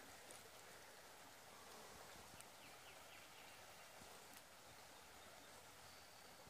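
Near silence: faint outdoor ambience with a few tiny ticks.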